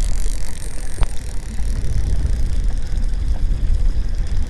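Steady low rumble of wind buffeting the microphone on a moving trolling boat, with one sharp click about a second in.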